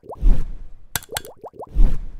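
Cartoon-style sound effects of a like-and-subscribe button animation: short rising pops and sharp clicks, with a low thump shortly after the start and another near the end.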